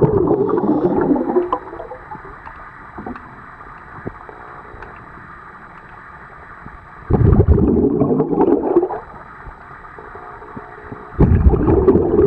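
Scuba regulator exhaust bubbles heard underwater: three bursts of a diver's exhaled air, each a couple of seconds long and trailing off, with quiet stretches between breaths.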